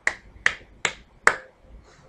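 Four sharp finger snaps in a steady rhythm, about two and a half a second.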